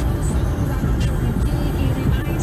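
Steady road and engine rumble inside a moving car's cabin at highway speed, with music playing underneath.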